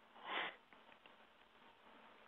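A man's single short breath in through the nose, a sniff lasting about a quarter second near the start, followed by faint room noise.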